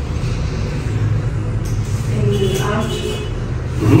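A steady low rumble in the background, with faint murmured speech about halfway through and a short "mm-hmm" at the end.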